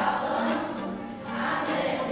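Children's choir of elementary-school students singing together, holding long notes.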